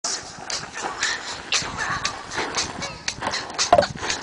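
White sneakers scuffing and sliding on a sandy dirt path during moonwalk steps, in a rough rhythm about twice a second. Faint voices can be heard, and a brief louder voice-like sound comes near the end.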